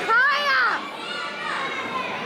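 A child's high-pitched yell that rises and falls in pitch, lasting under a second at the start, followed by a general murmur of voices in a large hall.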